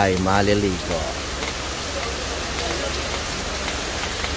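Steady rain falling on concrete pavement and parked cars: an even hiss throughout.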